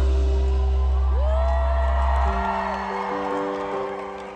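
Live concert music recorded from the audience: a sustained chord over heavy bass, and the bass cuts out a little past halfway, leaving softer held notes. Over it a single high voice slides up, holds a long note and slides down, with some crowd whooping.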